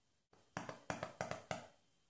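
Small plastic hand-sanitizer pump bottle pressed rapidly, about half a dozen quick clicks in a row, with the pump working empty because the bottle is out of sanitizer.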